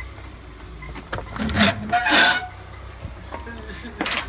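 A truck's rear cargo door being unlatched and opened: a sharp click from the locking-bar latch about a second in, then a loud rasping metal scrape as the bar turns and the door swings open.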